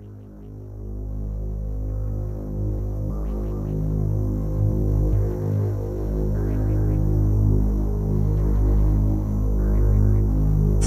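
Electronic psytrance intro: a deep, throbbing synth bass drone with layered sustained tones fades in from silence and swells over the first second or so, then holds steady. Short flickers of higher synth texture come and go over it.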